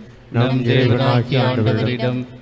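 Speech only: a man reading aloud in Tamil at a fairly level pitch, starting again after a short pause.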